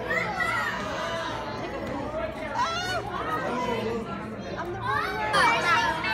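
Children's voices chattering and calling out, several at once, over a low steady hum.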